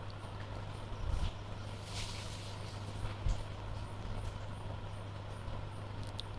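A steady low hum, with two soft low thumps and a brief faint hiss partway through.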